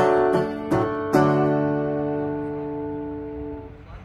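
Acoustic guitar strummed a few times, then a final chord struck about a second in and left to ring, slowly fading out as the song ends.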